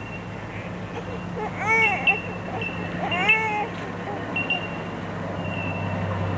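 A baby's two short high-pitched squeals, each rising then falling, about a second and a half apart, over a steady low hum.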